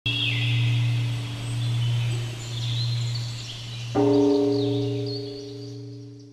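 A large bell struck at the start and again about four seconds in, each stroke ringing on with a deep, slowly pulsing hum and fading, while birds chirp faintly above it.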